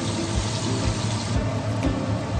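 Starch-coated chicken pieces deep-frying in a wok of hot oil, a steady sizzle, over background music with a steady beat.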